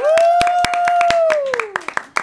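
A few people clapping their hands, with one long high-pitched cheer held steady and then falling away in pitch near the end.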